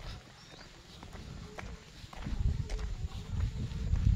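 Footsteps of someone walking on a paved lane, a scatter of short steps, under a low rumble on the microphone that grows louder about halfway through.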